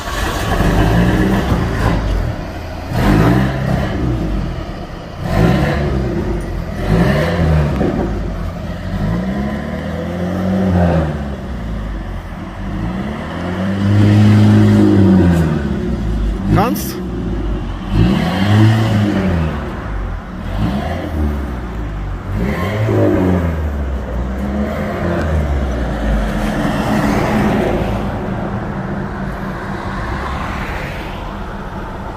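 Engine of a Pontiac Fiero-based Ferrari F355 replica, just started and standing, being revved again and again: about ten throttle blips, each rising and falling in pitch over a second or two, the longest and loudest one about halfway through.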